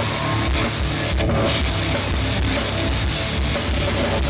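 Live metal band playing: distorted electric guitars over a pounding drum kit, loud and dense, picked up by a phone microphone in the crowd.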